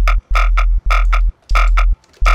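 Serum synth bass patch with a sub oscillator, made for Belgian jump-up drum & bass, playing four short repeated stabs: a deep sub under a buzzy, distorted mid-range tone. It is driven through Ableton's Saturator in Analog Clip mode with the drive raised to around 9–12 dB, adding distortion.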